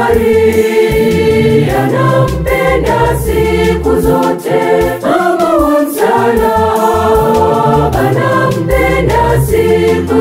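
Gospel choir song: a mixed choir of men and women singing over organ and bass accompaniment.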